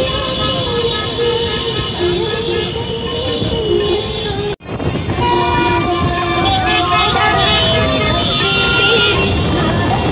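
Long held tooting tones that waver a little in pitch, a lower tone breaking in and out, over the noise of motorbikes and road traffic. The sound drops out for an instant about halfway and comes back with higher tones, one sliding slowly down.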